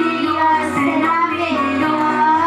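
Children's song: children singing the melody over a music backing track with a bass line.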